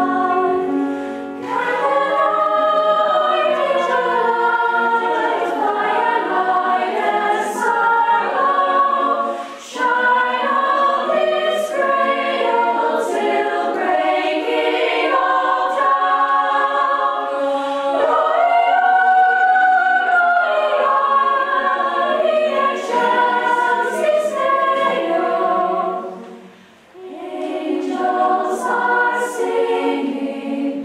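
Girls' and women's choir singing in several-part harmony, with short breaks between phrases about ten seconds in and near the end.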